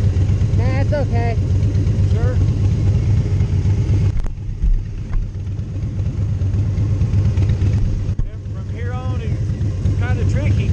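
Motorcycle engines idling steadily, a low even rumble, with a man's voice over it in the first couple of seconds and again near the end; the level drops a little about four seconds in.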